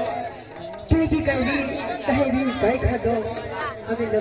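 Speech: performers' voices in stage dialogue, picked up by overhead stage microphones, with a dip in loudness before a sudden restart about a second in.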